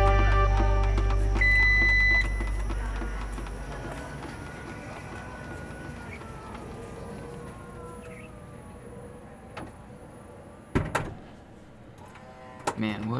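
Background music fading out, then a vehicle's power liftgate closing: a short warning beep about a second and a half in, then the motor's faint whine sliding slowly down in pitch. A sharp knock near the end.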